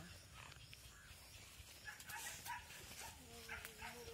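Near silence with a faint outdoor background. Near the end a soft, drawn-out voice begins.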